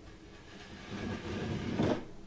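Straight edge scraped across drywall joint compound on a ceiling, shaving off the high points of the patch. A rough scraping that builds after about half a second and is loudest near the end.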